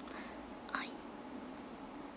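A young woman's brief breathy mouth sound, like a quick breath or a whispered syllable, about three-quarters of a second in, over a steady low hum.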